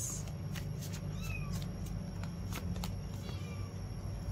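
A cat meowing faintly a couple of times, short falling calls, over soft clicks and taps of tarot cards being handled and laid on the table.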